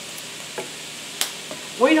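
Green beans, onion and bell pepper sizzling in butter in a skillet, a steady even hiss, with one sharp click a little past halfway through.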